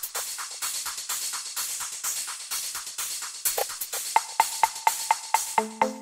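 Minimal techno track: an even pattern of clicky percussion and hissing hi-hats about four hits a second. A short pitched synth blip joins each beat from about four seconds in, and a held synth chord comes in near the end.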